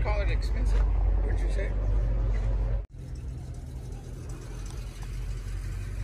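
Outdoor background of people talking at a distance over a steady low rumble. The sound drops off sharply at an abrupt cut about three seconds in, after which the rumble carries on more quietly.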